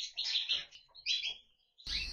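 Zebra finches giving several short, high-pitched calls in quick succession, falling silent after about a second and a half.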